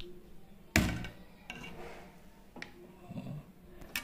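Handling noise from fitting a small front-panel connector onto a motherboard's pin header inside a PC case: a sharp knock about a second in, then a few fainter clicks.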